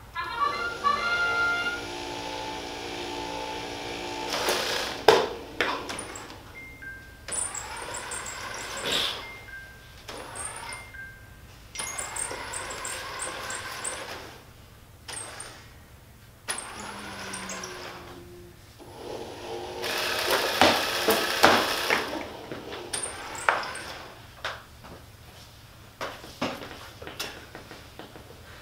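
Small competition robot's electric motors whining and whirring as it drives and turns across the field, with knocks and clatter from its mechanisms. A louder stretch of whirring and clatter comes about twenty seconds in.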